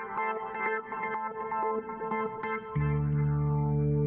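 Arturia B-3 V software tonewheel-organ emulation playing its 'City Of Rome' pad preset: a quick run of short notes, then a louder held chord with low bass notes coming in nearly three seconds in.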